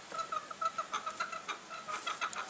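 A chicken clucking in a quick run of short, even-pitched notes.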